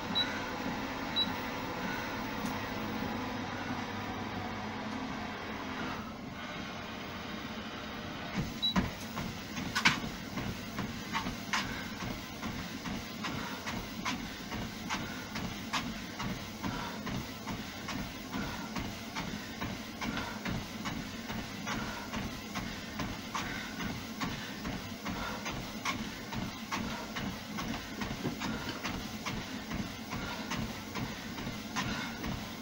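Fitnord treadmill running, its motor and belt droning steadily, with a few short high console beeps in the first nine seconds. From about ten seconds in, footfalls on the belt come through as an even rhythm of about two to three a second, after the belt has slowed.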